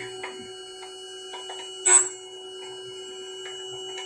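End mill sharpening machine running with a steady motor hum while a three-flute end mill in its collet holder is turned against the grinding wheel for a final pass over the cutting edges. Faint scrapes and clicks run throughout, with one brief, sharp grinding sound about halfway through.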